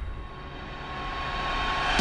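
A low rumbling sound-effect swell that grows steadily louder, with a faint steady high tone above it.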